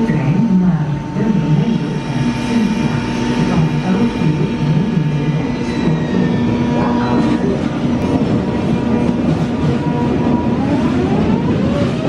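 ICE 3 (class 406) high-speed electric train pulling slowly out of a station, its traction equipment giving steady whining tones. Near the end a whine rises in pitch as the train gathers speed.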